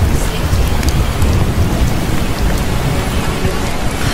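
Steady rain noise with a continuous deep rumble underneath, like a rain-and-thunder ambience track.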